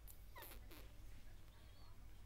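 Newborn Belgian Shepherd puppy giving one short, faint squeak about half a second in, amid a few soft clicks from the nursing litter.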